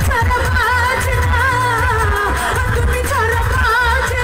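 A woman singing a Bangla folk song live into a microphone, her melody wavering and ornamented, over an amplified band with a heavy bass line.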